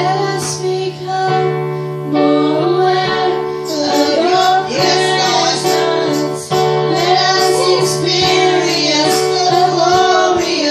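Several women singing a song together, accompanied by sustained chords on an electric keyboard.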